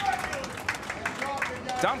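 Candlepin bowling alley ambience: crowd voices chattering in the background, with a few sharp knocks.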